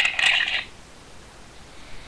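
A brief, high-pitched metallic jingle with a few clicks in the first half-second, then quiet room tone.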